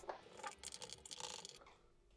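Near silence with a few faint, scattered small clicks, then complete silence for the last part.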